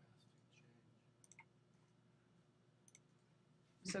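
Near silence with a few faint computer mouse clicks: a quick cluster about a second in and another pair near three seconds.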